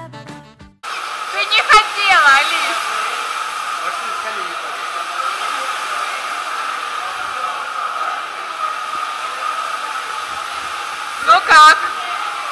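Steady rushing noise of an indoor waterpark hall, broken by shrill voices about two seconds in and a loud child's shout near the end. Music plays for the first second.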